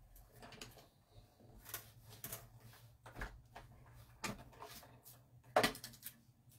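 Die-cutting machine passing a die and cardstock through, with a string of irregular clicks and knocks; the loudest knock comes near the end.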